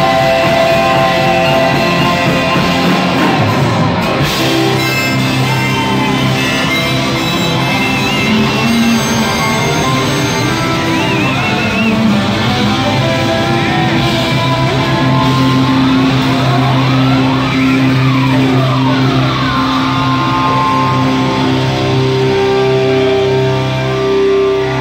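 Live rock band playing loud amplified music in a large hall, with electric guitar to the fore over bass guitar. In the second half a run of sliding notes rises and falls.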